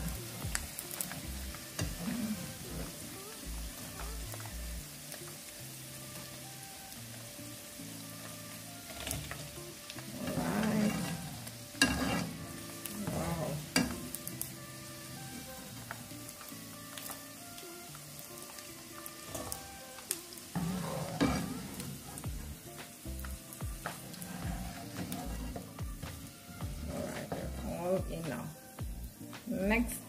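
Chicken pieces frying in hot oil in a pan, a steady sizzle with scattered crackles, as a wire skimmer scoops the fried pieces out.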